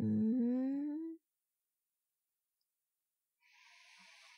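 A woman's closed-mouth hum, a questioning 'hmm?' lasting about a second and rising slowly in pitch. Near the end comes a faint breathy whisper or exhale.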